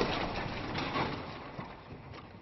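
Crash sound effect of a logo intro dying away: a noisy wash that fades steadily, with a few small clicks near the end as the tumbling pieces settle.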